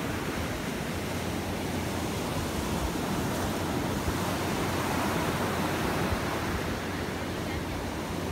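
Ocean surf breaking and washing onto a beach: a steady rush of noise that swells slightly about halfway through.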